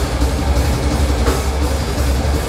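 Live heavy metal band playing loud: distorted electric guitars and bass over a drum kit with cymbals, a dense, unbroken wall of sound with a heavy low end.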